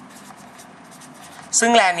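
Marker pen scratching across paper in short, faint strokes as words are written. A man starts speaking about one and a half seconds in.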